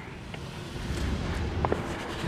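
Low rumble of wind on the microphone while riding a bicycle along a road, growing from about a third of the way in, with a couple of faint clicks.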